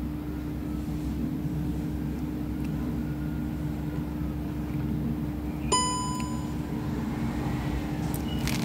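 A steady low hum with a constant drone, and a single short electronic beep a little under six seconds in.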